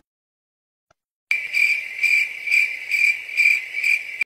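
Silence, then about a second and a half in, insect chirping starts: a steady high trill that pulses about twice a second.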